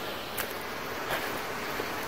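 Steady rush of water from a seasonal snowmelt waterfall.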